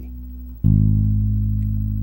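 Electric bass guitar: a low note, fretted at the fourth fret of the E string (G sharp), plucked with the fingers about half a second in and left ringing, slowly fading. The previous note is still dying away before it.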